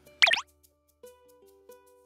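A short cartoon-style plop sound effect, a quick steep downward sweep in pitch, followed by light background music of plucked notes.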